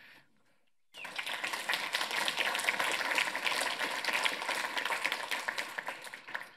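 Audience applauding: the clapping starts abruptly about a second in and tapers off near the end.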